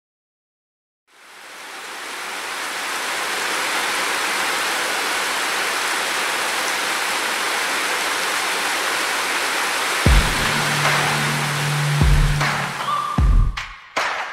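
Heavy rain falling, a steady hiss that fades in about a second in. From about ten seconds in, deep thuds and a held low note come in as background music starts.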